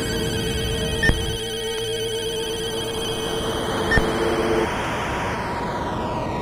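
Electronic interlude of sustained synthesizer tones, with a sharp click and short high beep about every three seconds. After about four and a half seconds the low held tone gives way to a higher one, and a high sweep rises and then falls.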